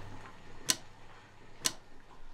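Clock ticking: two sharp ticks about a second apart.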